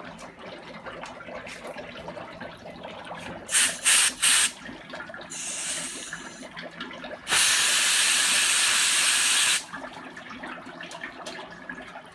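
Spray hissing from a hand-held sprayer aimed into a fog-filled sink: three short bursts a few seconds in, then a longer spray, then a steady spray of over two seconds that cuts off sharply.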